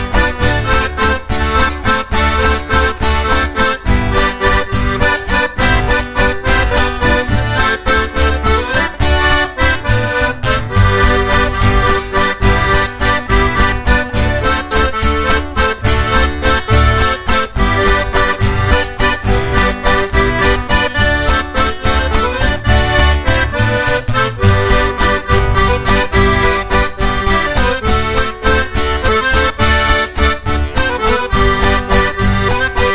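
Accordion-led band music with a steady percussion beat, played without words.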